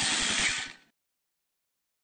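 Logo intro sound effect: a noisy electric whoosh with a rapid low pulsing, about ten pulses a second, that cuts off under a second in.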